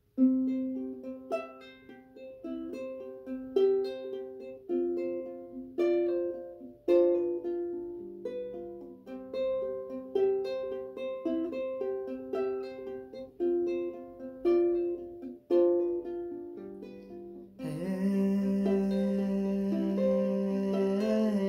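Solo ukulele fingerpicking an arpeggiated intro, the song's 12-string guitar part cut down to four strings, starting abruptly with single plucked notes in a repeating pattern. Near the end a man's voice comes in singing over the picking.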